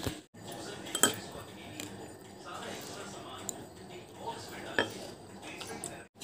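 A steel spoon clinking a few times against a glass bowl, the loudest clinks about a second in and again near the end, over a faint steady room background.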